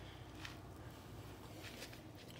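Faint sounds of a kitchen knife cutting through a large Russell avocado around its pit, with two soft short scrapes, one about half a second in and one near the end.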